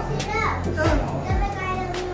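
A young child's high voice calling out over background music.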